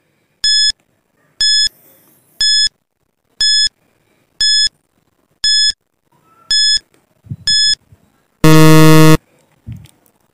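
Countdown timer sound effect: eight short high beeps, one a second, followed about eight and a half seconds in by a louder, lower buzzer of under a second signalling that time is up.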